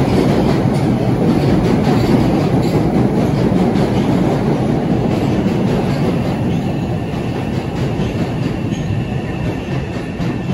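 MBTA Orange Line subway train running through the underground station: a loud, continuous rumble of wheels on rails that slowly eases off over the last few seconds.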